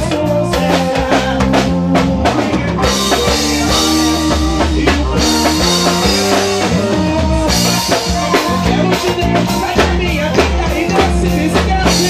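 Live band playing upbeat dance music: drum kit with steady bass-drum and snare hits under electric bass and electric guitar.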